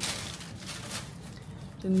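Faint rustling and handling noise, with a few light ticks, while a cake is reached for; a woman's voice begins near the end.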